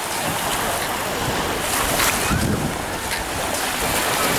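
Small waves washing in on a sandy shore, a steady rushing noise, with wind buffeting the microphone.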